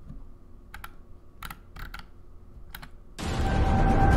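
A few sharp clicks at a computer keyboard, four in all, spaced under a second apart. Near the end, loud outro music starts suddenly and drowns them out.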